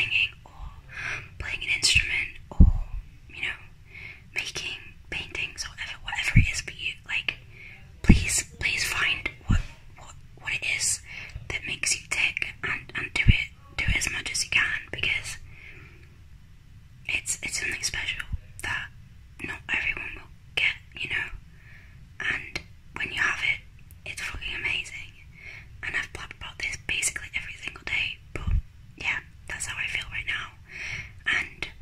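A woman whispering in short phrases with brief pauses and one longer pause about sixteen seconds in, with a few low thumps now and then.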